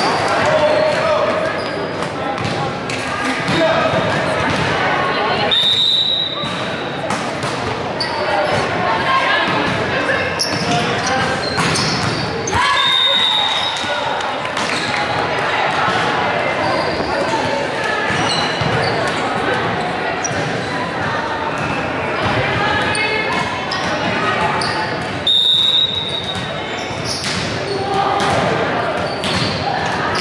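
Volleyball being struck and bouncing on a hardwood gym floor, with players' and spectators' voices echoing in the large hall. A referee's whistle blows three times, about a second each, a few seconds in, near the middle and near the end, marking the ends of rallies.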